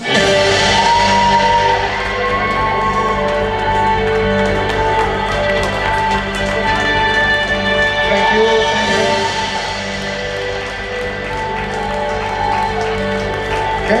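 Music with a steady beat, starting abruptly and playing on loudly.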